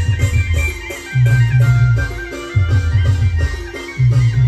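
Live Gujarati timli band music: a loud, repeating bass line in phrases of about a second and a half, with drums and a high keyboard-like melody above.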